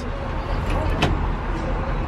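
A steady low hum in a school bus cab, with one sharp click about a second in as the transmission shift lever is moved.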